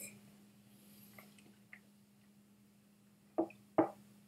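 A man sipping whisky from a glass, then faint wet mouth sounds as he tastes it, with two short, louder wet mouth sounds near the end.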